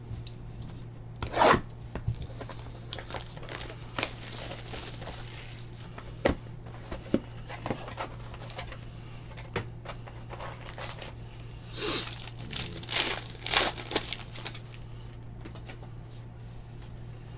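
Cardboard of a Panini Contenders Football hobby box being torn open, then a card pack wrapper ripped and crinkled, in short bursts of tearing that are loudest near the end.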